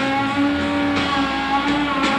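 Live blues-rock band playing, with a distorted electric guitar holding a long sustained note over bass and a drum stroke about once a second.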